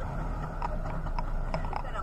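A woman laughing in short broken bursts over a steady low rumble.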